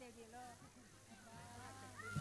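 Near silence, with faint distant voices in the background.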